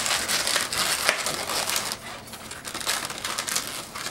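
Inflated latex 260 twisting balloons rubbing and squeaking against each other as they are handled and twisted, a dense crackly rubbing that eases briefly about two seconds in.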